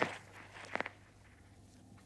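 A few quick footfalls on grass, three short soft strikes close together about three-quarters of a second in, then quiet with a faint steady low hum.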